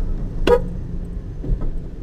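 Interior cabin noise of a Chevrolet Corsa being driven: a steady low engine and road hum, with one brief sharp sound about half a second in.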